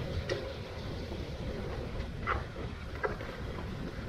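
Wicker toboggan's wooden runners sliding down an asphalt road: a steady rumbling scrape, with a few short, sharper scrapes, near the start, at about two seconds and at about three seconds.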